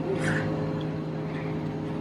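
Steady low hum of the room's background noise, with a brief soft hiss just after the start.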